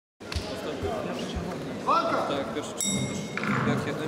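Sound of an amateur MMA bout in a reverberant sports hall: shouting from corners and spectators, a few dull thumps from the fighters on the mats, and a short high-pitched tone about three seconds in.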